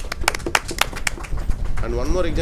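A few people clapping their hands, quick claps that die away after about a second and a half; a man starts speaking near the end.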